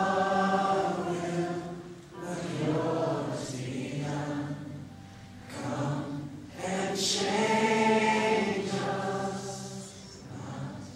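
Choir singing a worship song in long held notes, in several phrases of one to three seconds with short breaks between.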